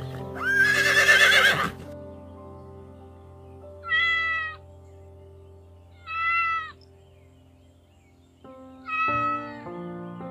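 A pony whinnies loudly for about the first second and a half. Then a domestic tabby cat meows three times, each call under a second long and spaced a couple of seconds apart, over steady background music.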